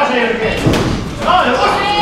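Voices shouting ringside at a boxing bout, echoing in a large hall, with a single thud about half a second in.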